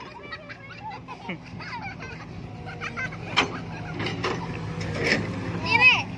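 Children's voices and calls during outdoor play, over a steady low hum, with two short sharp knocks about three and a half and five seconds in.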